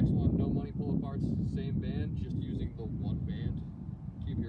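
A voice talking throughout, over heavy wind rumble on the microphone.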